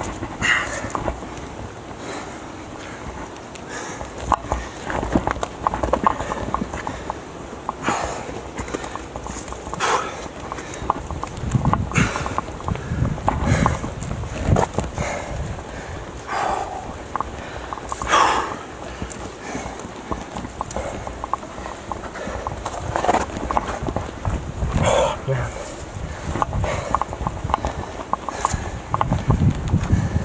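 Hands and shoes scuffing and knocking on rock as a climber downclimbs a rock face by hand, with the climber's breathing close to the body-worn microphone. The knocks and scrapes come irregularly throughout.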